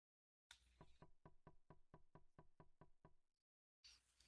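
Faint computer-keyboard typing: an even run of about fourteen clicks, some five a second, stopping about three and a half seconds in.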